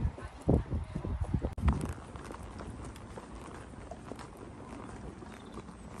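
A horse's hooves: a few heavy, irregular thumps for the first second and a half, then steady outdoor background with faint, light hoof falls.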